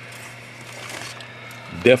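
A pause in speech filled only by a faint steady low hum and hiss, until a man's voice starts again near the end.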